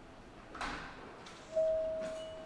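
A short hiss, then a fainter one, then a single clear chime tone that rings out and slowly fades.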